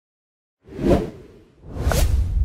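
Whoosh sound effects of an animated logo intro. One whoosh swells about two-thirds of a second in, peaks and fades, then a second whoosh builds near the end with a deep low rumble.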